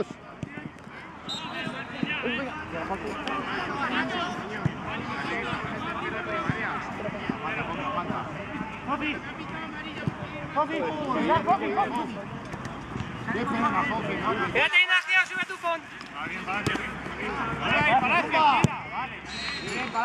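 Overlapping shouts and chatter of footballers calling to each other during play, with a couple of sharp knocks.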